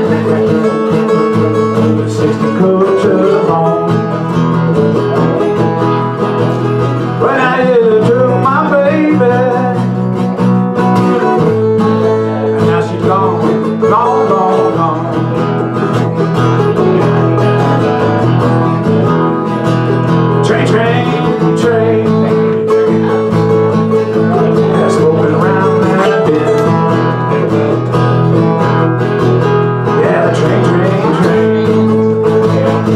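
Two acoustic guitars playing a country-style song with no vocals: a steady strummed rhythm, with a melodic line wavering above it.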